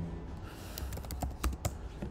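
Computer keyboard being typed: several short, separate key clicks as "sudo" is added to the front of a terminal command and the command is entered.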